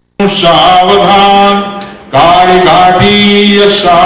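A man chanting Sanskrit wedding mantras in long, held, melodic notes, with a short pause about halfway through. The sound drops out for a moment at the very start.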